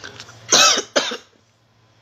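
A woman coughing twice, a louder, longer cough about half a second in followed quickly by a shorter one.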